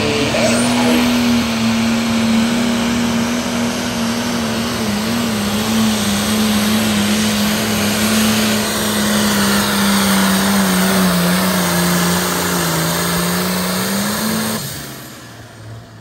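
Diesel pulling tractor running flat out as it drags a weight-transfer sled, a loud steady engine note whose pitch slowly drops as the pull goes on. About 14.5 seconds in the engine sound falls away suddenly as the driver comes off the throttle at the end of the pull.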